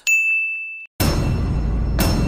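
A single bright 'ding' sound effect, one steady high bell-like tone lasting under a second, marking a sin being added to the on-screen sin counter. About halfway through, a loud, steady noisy sound with a heavy low end starts abruptly.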